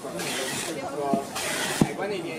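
Packing tape being pulled off handheld tape dispensers in bursts of screeching hiss, with a sharp click near the end, over voices.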